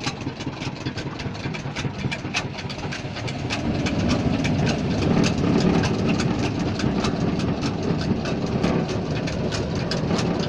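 Flattened-rice (chura) making machine running: a steady low engine drone under a fast, irregular patter of clicks from the pressing mechanism and grain. The drone grows louder about four seconds in.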